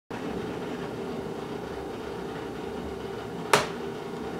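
Aquarium filter running with a steady hum. A single sharp click about three and a half seconds in.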